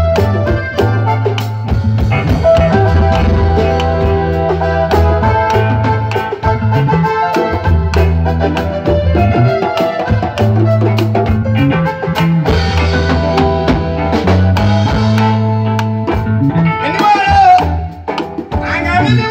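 Live band playing a steady groove: drum kit beating out a regular rhythm under a walking bass guitar line, with keyboard and guitar notes on top.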